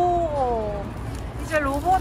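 A woman's long, drawn-out "oh~" of amazement, falling in pitch. Speech starts near the end, over a steady low hum.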